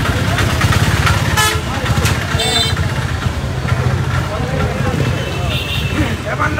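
Busy street traffic: a steady low rumble of vehicles with short horn toots, one about a second and a half in and another a second later, over scattered crowd voices.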